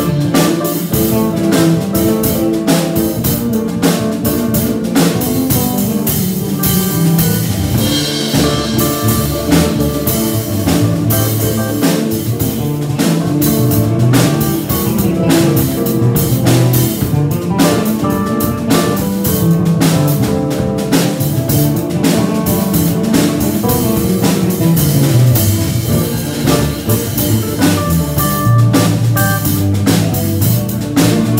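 A small live band playing an instrumental passage: drum kit with steady beats, electric guitars, and keyboard, with a moving low bass line underneath.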